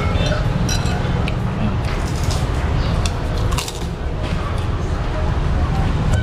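Steady low rumble of street noise with scattered light clicks and clinks of someone eating from a bowl with a spoon, and faint voices in the background.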